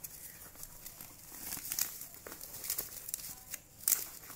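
Plastic packaging bag crinkling as a fabric helmet cover is handled and drawn out of it, a quiet run of scattered light crackles with a sharper click near the end.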